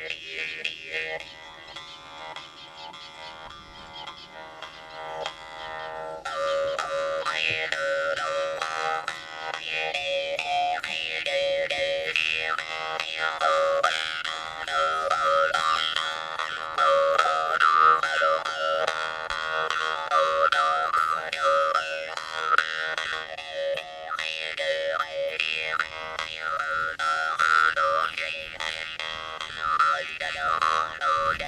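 Yakut khomus (metal jaw harp) played solo: a steady twanging drone plucked rapidly, with overtones sliding up and down above it as the player shapes her mouth. It is softer at first and grows louder about six seconds in.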